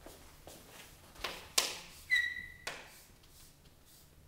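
Chalk writing on a blackboard: a few scratchy strokes, the loudest about a second and a half in, then a short high squeak of the chalk for about half a second.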